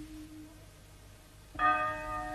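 A bell ringing out and fading away, then struck again about one and a half seconds in, the new stroke ringing on.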